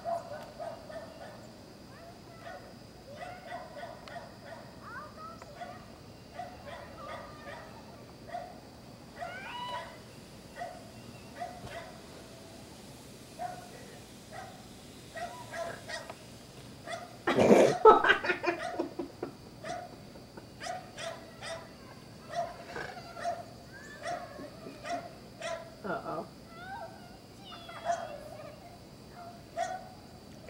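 A small dog barking and yipping again and again in short calls, with children's voices in the background and one much louder burst a little past halfway.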